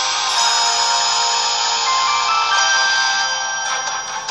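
Short electronic music jingle of held, chiming notes with a few stepped changes in pitch, fading out near the end.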